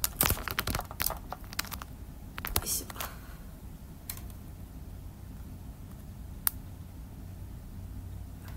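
Handling noise of the phone that is filming as it is picked up and set back in place: a run of clicks, taps and rustles over the first three seconds, then a low steady room hum with one sharp click later on.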